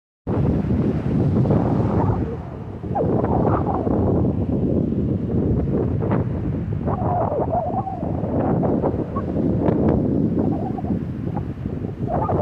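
Wind buffeting the microphone in gusts, a heavy low rumble with a brief lull about two and a half seconds in, over the wash of small waves breaking on the shore.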